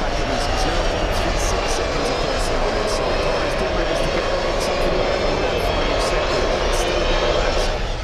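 Several Ducati V21L electric racing motorcycles passing in a pack, their electric motors giving a steady, overlapping whine that drifts slowly down in pitch.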